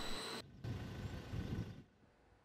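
Faint low rumbling background noise, with a short drop about half a second in and a fade to near silence shortly before the end.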